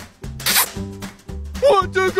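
Corgi howling in a rising-and-falling, talk-like way starting near the end, over background music with a steady beat. About half a second in there is a short breathy hiss.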